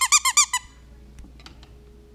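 A squeaky dog toy squeezed in a quick run of short high squeaks, about eight a second, that stops about half a second in.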